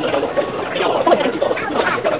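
Indistinct voices talking, with no words clear enough to make out.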